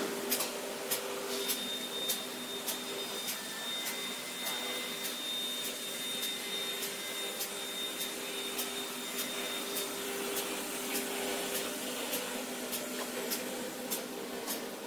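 Spiral paper tube making machine running: a steady mechanical hum and whir, with evenly spaced clicks a little under two a second. A thin high whine joins in for most of the first part and stops about two-thirds of the way through.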